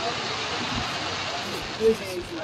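Fireworks display: a steady rushing hiss from rising shells and fountains, with scattered onlookers' voices and one brief loud sound near the end.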